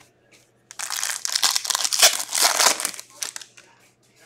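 Foil wrapper of a hockey card pack being ripped open and crinkled by hand: a dense crackling that starts about a second in and dies away after about two seconds, with a few faint crinkles after.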